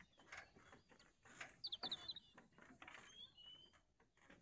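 Faint irregular clicks and creaks from the wooden-plank suspension bridge, with small birds chirping over them: a quick run of high chirps a little past halfway and a short whistled note near the end.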